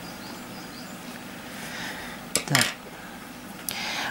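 Faint rustling of cotton thread and crocheted lace being handled while a crochet hook works chain stitches, over quiet room noise.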